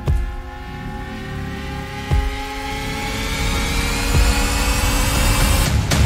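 Trailer sound design: a slowly rising drone of several stacked tones over a low rumble, with deep thuds about every two seconds, building to a loud hit at the end.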